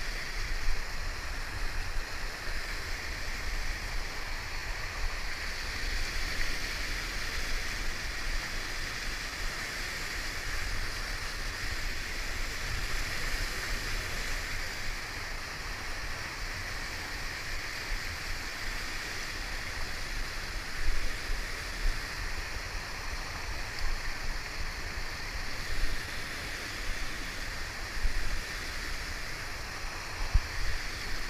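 Whitewater rapids rushing steadily around a kayak, with a few brief louder surges in the last third.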